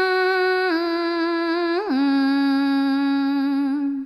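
A single voice singing a Khmer Sarabhanya, the melodic Buddhist verse chant, holding long notes. It steps down in pitch about three-quarters of a second in, then again just before two seconds after a quick upward flourish, and stops near the end.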